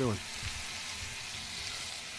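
Sliced chicken breast, red peppers and onions frying in a stainless steel skillet: a steady, even sizzle.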